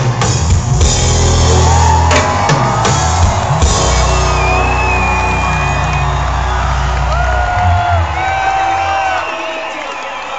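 Live hip-hop music played loud through a concert PA, with heavy bass and drums and crowd noise underneath. The bass cuts out about nine seconds in and the music thins to a quieter stretch.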